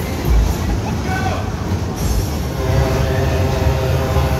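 Superbob fairground ride running, its sledge cars rumbling round the track over loud ride music. The music's thumping beat stops about half a second in, and a steady low drone comes in near the three-second mark.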